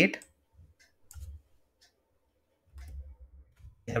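A handful of light, scattered clicks from a computer mouse and keyboard as lines of code are selected in an editor.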